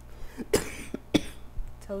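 A woman coughing twice, about half a second apart, from a slight cold.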